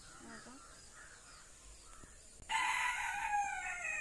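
A rooster crowing once, starting abruptly about two and a half seconds in and falling in pitch as it trails off.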